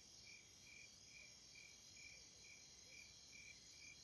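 A cricket chirping faintly in an even rhythm, a little over two chirps a second, over a low background hiss.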